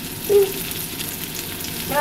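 Hamburger steak patty with onion slices frying in a nonstick frying pan, sizzling and crackling steadily. A short sung note cuts in briefly about a third of a second in.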